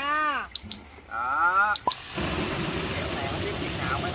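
Water from a garden hose gushing in a steady rush onto an inflatable pool float as it is being filled, starting about halfway through after two short bursts of voice.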